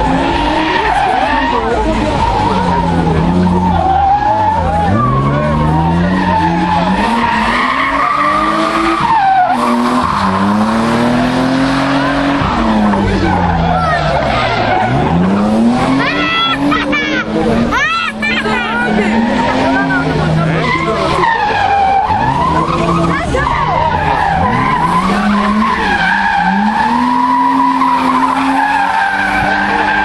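A drifting car: its engine revs climb and drop every few seconds as the driver works the throttle, while the tyres squeal with a wavering pitch as they slide.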